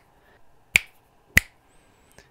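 Two sharp finger snaps about 0.6 s apart, loud enough to drive the Zoom H1's input into its peak threshold and light its peak indicator.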